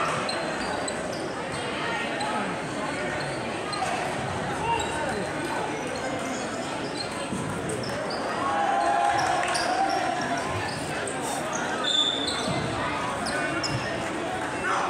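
Crowd of spectators chattering in a school gym, with a basketball bouncing on the hardwood court and short sneaker squeaks, one louder squeak near the end.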